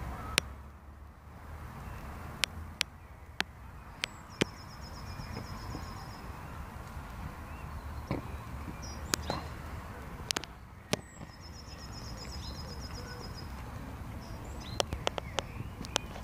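Outdoor ambience with a steady low rumble, a bird giving a fast, high rattling trill twice, and a dozen sharp clicks scattered through, several in quick succession near the end.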